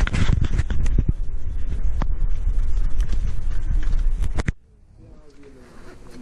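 Loud rumbling and irregular clicking and scraping right on the camera's microphone, the noise of the mic being rubbed, buffeted or handled while walking. It cuts off suddenly about four and a half seconds in, leaving faint voices.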